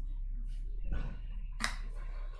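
Steady low hum and faint noise from an open microphone, with one sharp click about one and a half seconds in.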